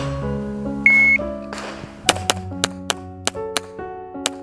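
A shot timer's start beep, one short high tone about a second in, then a fast string of about seven pistol shots starting about two seconds in, roughly four a second. Background music plays throughout.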